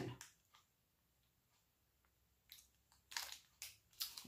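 Near silence, then three short, soft noisy sounds in the last second and a half.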